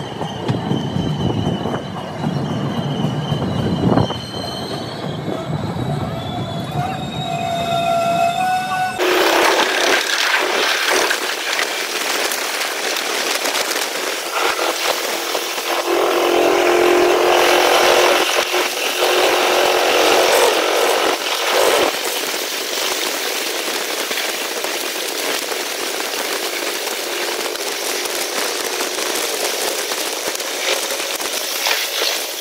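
Passenger train running, heard from an open coach door: a low rumble with a few whining tones that step upward as it pulls along the platform, then, after a sudden change about nine seconds in, a steady rush of wheels and wind at speed, loudest a little past the middle.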